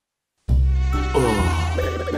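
Cartoon sound effect of flies buzzing, starting about half a second in after a brief silence and continuing steadily.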